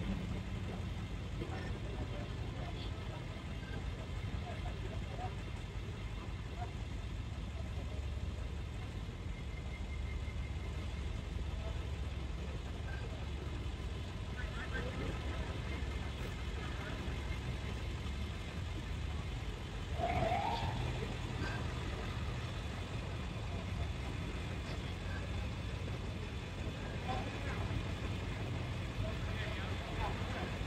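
Steady low rumble of vehicle engines as motorized parade floats and escort cars move slowly along the street, with faint voices of onlookers and one brief raised voice about twenty seconds in.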